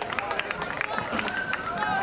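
Spectators at a soccer match shouting and cheering after a goal, with a few claps in the first second.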